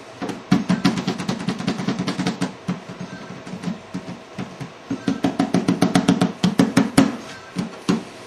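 Toy activity cube playing an electronic tune with a fast drum beat. It plays in two runs of about two seconds each, with a pause between them.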